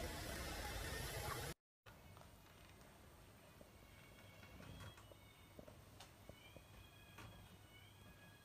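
Faint room noise that cuts off after about a second and a half, then near silence with a few faint clicks and two faint, thin, high-pitched tones of about a second each.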